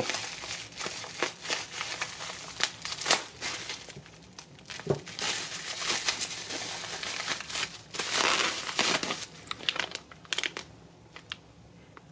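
Bubble-wrap packaging crinkling and crackling as it is cut with scissors and pulled apart by hand, with many small sharp clicks and a plastic bag rustling. The handling goes quieter in the last two seconds.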